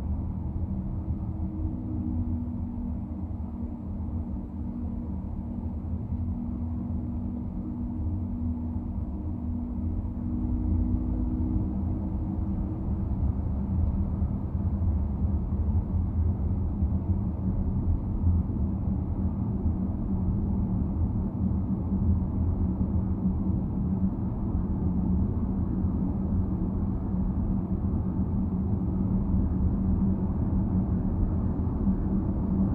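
Car cabin noise while driving: a steady low rumble of tyres and engine on the road. It grows louder about ten seconds in as the traffic clears and the car picks up speed, and a faint steady hum fades out a little after that.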